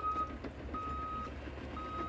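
Backup alarm of heavy construction machinery beeping, one steady single-pitch beep about every second, over a low engine rumble: the machine is reversing.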